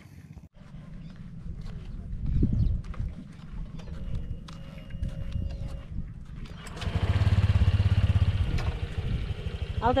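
Honda Click 125 scooter's single-cylinder engine running with a low, even pulse, growing louder about seven seconds in.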